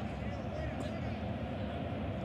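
Steady, low background noise of a televised football match's pitch-side ambience, with no commentary over it.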